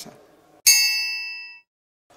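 A single bright, bell-like ding added in the edit as a transition sound effect. It strikes suddenly about two-thirds of a second in and rings down over about a second before cutting off to silence.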